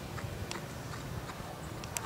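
A horse's hoofbeats and tack while trotting on sand arena footing: light, irregular clicks over a low steady background.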